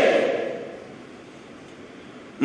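A man's preaching voice trails away in the first half second, then a pause holding only faint, steady room hiss.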